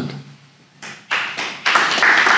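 A small audience clapping. It starts about a second in and grows fuller near the end.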